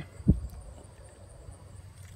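A single soft low thump about a quarter second in, like the handheld recording device being bumped. After it comes a quiet stretch with only a faint, steady, high-pitched tone.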